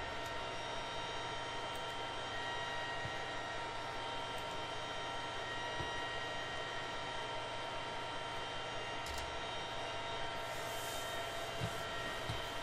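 Steady background hum and hiss with several faint steady whining tones over it, and a few faint clicks.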